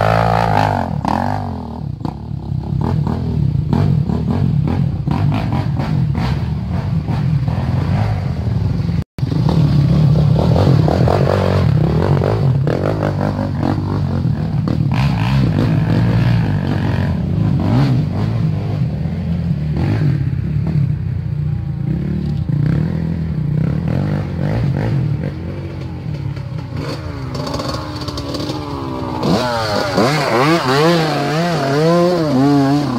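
Off-road dirt bike engines running continuously on a trail, with a brief cut to silence about nine seconds in. Near the end another dirt bike approaches, its engine revving up and down.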